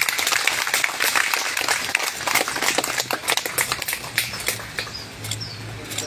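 Audience applauding, the clapping thinning out and fading over the last couple of seconds.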